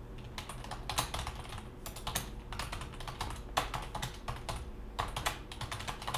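Typing on a computer keyboard: quick runs of key clicks with brief pauses between them, as a file name is typed in.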